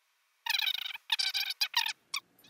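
High-pitched squeaking in several short bursts, starting about half a second in, the first two longest and the last ones brief.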